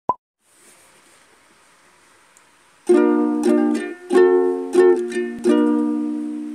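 A ukulele strumming chords, starting about three seconds in after a short blip and a stretch of faint hiss, with the last chord left to ring and fade.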